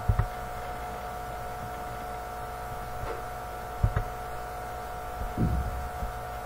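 Steady electrical hum made of several fixed tones over a low drone, with a few brief, soft low thumps: one right at the start, one about four seconds in, and one about five and a half seconds in.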